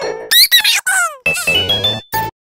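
A children's logo intro jingle, sped up and run through stacked pitch-shifting and chord audio effects: squeaky upward and downward pitch swoops in the first second, then a quick rising run of notes.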